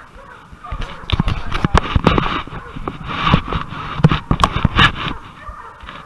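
A person hurrying barefoot along a muddy, brushy riverbank: a fast, uneven run of footfalls, knocks and rustling close to the microphone. It starts just under a second in and dies down about five seconds in.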